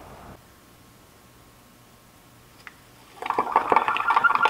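Mostly quiet room tone with one short click, then, about three seconds in, a metal spoon starts stirring and scraping against the sides of a glass measuring cup of liquid soft plastic, with quick clinking.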